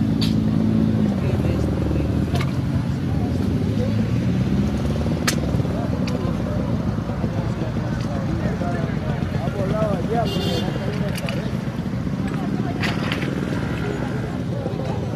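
Street traffic: vehicle engines running on the road, with a steady engine hum that stops about a second in, and indistinct voices of bystanders throughout. A few short clicks, and a brief high-pitched tone about ten seconds in.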